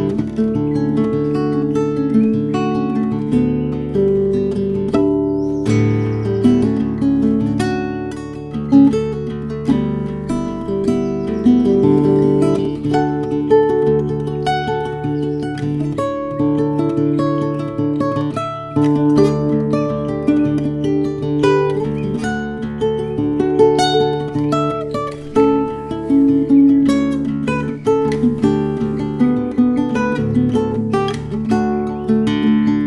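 Instrumental passage of a song: acoustic guitar playing, with plucked and strummed chords and no singing.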